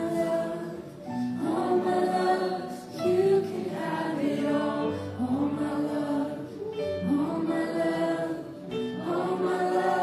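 Live worship band playing a slow song, with sung phrases of long held notes carried by several voices together.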